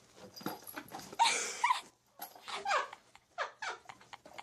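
A cat giving several short, wavering growl-like calls, about a second apart, as it swats and tussles.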